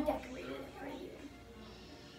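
A television playing faintly in the background, speech over music, with a short louder voice sound right at the start.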